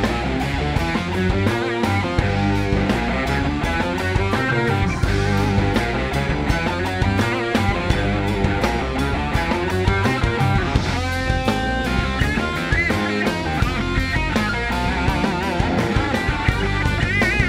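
Live rock band playing an instrumental passage: electric guitar, bass guitar and drums with a steady beat and heavy bass. Over the last few seconds a lead guitar line wavers in pitch with wide vibrato.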